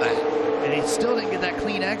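NASCAR Xfinity Series stock cars' V8 engines running at full throttle on track, a steady drone that sags slightly in pitch, with a commentator's voice over it.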